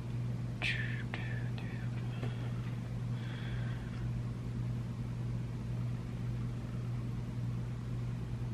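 Steady low hum with faint breathy hiss and a few small clicks in the first half, as a metal eyelash curler is clamped on the lashes.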